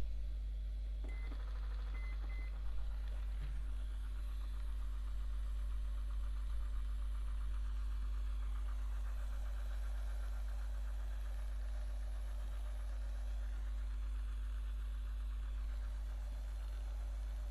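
A corded handheld electric facial device beeps three short times as it is switched on, then runs with a steady buzz while it is worked over the face. A constant low hum sits underneath.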